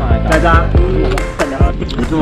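Background music with drum hits and a deep bass line, with a voice over it.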